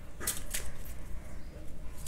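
A deck of tarot cards being split and handled by hand: two short crisp card clicks about a quarter and half a second in, then faint handling noise.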